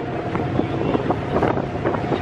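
Wind buffeting the microphone on the open deck of a high-speed ferry under way, over the steady low drone of the ferry's engines.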